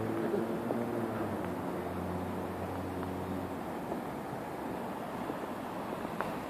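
Steady outdoor city background noise: a low hum of distant traffic that fades a little over halfway through, over a light rushing haze.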